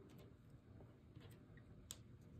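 Near silence: room tone with a few faint small clicks as small paper circles are handled, the clearest just before the end.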